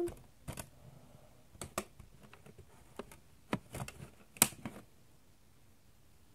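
Irregular light clicks and taps of small plastic items being handled, the loudest a sharp click about four and a half seconds in, dying away to room tone after about five seconds.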